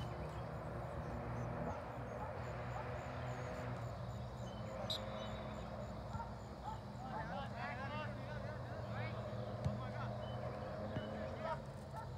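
Distant shouts and calls from soccer players on the field, coming more often from about seven seconds in, over a steady low hum.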